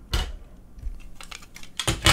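Small plastic clicks and taps as a Raspberry Pi circuit board is pushed out of its snap-together plastic case and set down on a table, with a sharper knock at the start and another near the end.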